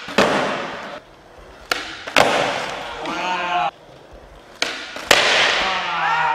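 Skateboard tricks on a flat concrete floor: about five sharp cracks of the board popping off its tail and slapping down, each followed by the rumble of urethane wheels rolling. The cracks come in pairs about half a second apart, pop then landing, and there is a short yell about three seconds in.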